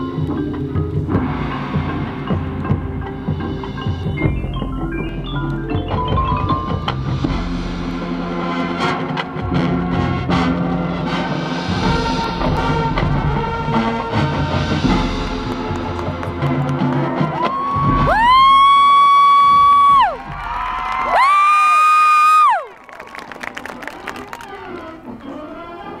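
Marching band playing a field show, with the pit's mallet percussion and timpani under the winds. Near the end come two long, loud held high notes, each sliding up into pitch and dropping off.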